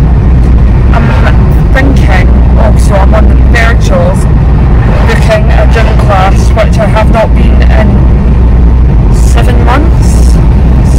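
Steady low rumble of road and engine noise inside a moving car's cabin, with a voice talking over it.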